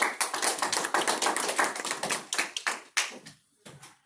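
A small audience clapping. The applause is dense for about three seconds, then thins to a few scattered claps and stops.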